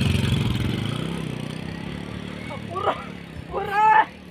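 A small motorcycle's engine running as it pulls away and fades into the distance. Near the end, a person gives two short shouted calls, the second the loudest sound.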